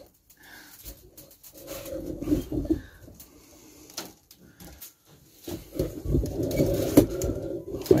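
A dove cooing in two low, wavering phrases of about two seconds each, with a few light clicks of the wire cage in between.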